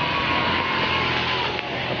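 A motor vehicle going past on the road: a steady engine hum that slowly falls in pitch over a rush of road noise.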